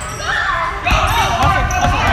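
Basketball bouncing on a gym floor, with a sharp bounce about a second in, among several spectators' and players' voices shouting and cheering in a large hall.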